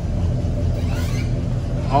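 Steady low rumble of a parked Chevrolet Caprice idling, even in level with no change in pitch.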